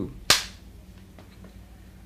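A film clapperboard's clapstick snapped shut once, a single sharp clap about a third of a second in, marking the start of a take.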